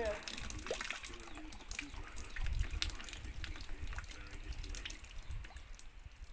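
Small amounts of water dripping and trickling from a water-pump line that is being cleaned out, with many small ticks and taps throughout.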